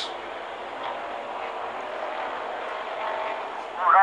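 Race car engine noise from a race broadcast: a steady drone that swells slightly near the end, heard just after a stock car's sudden failure left it trailing smoke.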